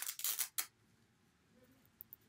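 A Velcro hook-and-loop fastener on a frilled costume sock being pulled apart: a short, scratchy rip lasting about half a second.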